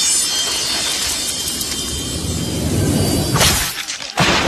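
Film trailer soundtrack: music mixed with crashing, splashing action sound effects. A loud hit comes about three and a half seconds in, followed by a brief sudden dip.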